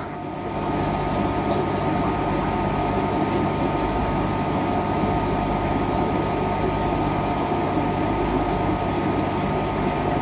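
Steady machine hum with a few held tones over an even hiss, unchanging throughout.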